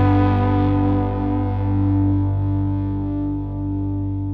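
A distorted electric guitar chord held and slowly dying away, the last chord of a rock song ringing out. Its brighter upper notes fade first.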